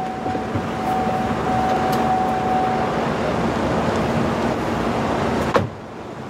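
Steady road and cabin noise inside a moving minivan, with a faint steady high tone that stops about halfway. Near the end comes a single sharp click, and the noise drops away after it.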